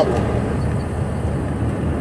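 A steady low rumble, with no distinct events.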